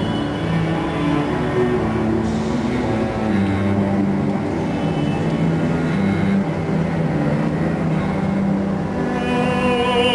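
A low string ensemble of cellos and basses playing slow, sustained low notes that change pitch every second or two. Near the end a solo operatic voice with wide vibrato comes in over them.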